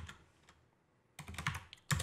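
Keystrokes on a computer keyboard: a last click or two, a pause of about a second, then a quick run of keypresses.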